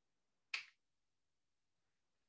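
Near silence broken once, about half a second in, by a single short, sharp click.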